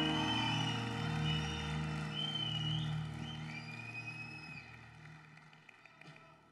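The band's last sustained low chord dies away while the audience claps, with a few high sliding whistles. Everything fades steadily to near quiet by the end.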